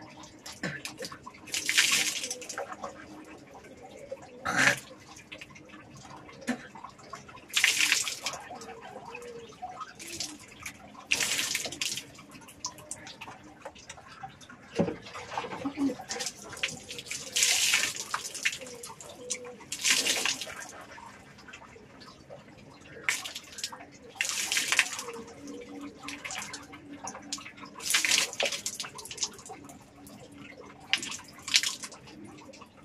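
Water splashing and pouring from a plastic mug in short bursts, each about a second long, repeated every few seconds at irregular intervals, as water is used for rinsing.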